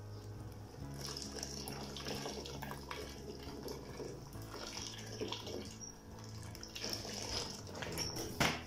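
Water poured from a jug into a large pot of tomato sauce, a steady splashing stream that starts about a second in and tails off near the end.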